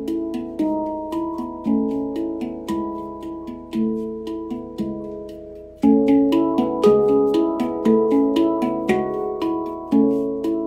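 Steel handpan played with the hands: a slow melody of struck notes, each ringing and fading away. About six seconds in the playing grows louder and busier.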